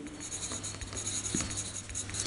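Pencil writing a word on paper: the tip scratching across the sheet in quick strokes.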